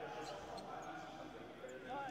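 Faint, muffled speech in the background over quiet room tone.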